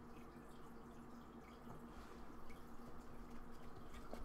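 Faint room tone with a low steady hum and a few soft ticks of a stack of trading cards being handled, a little busier in the second half.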